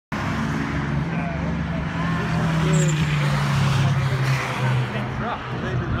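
A car's engine running on a race circuit, a steady drone that is strongest in the middle and eases near the end, with voices faintly over it.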